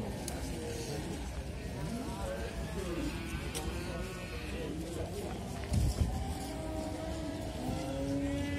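Busy livestock-market background of overlapping distant voices, with a brief low thump about six seconds in.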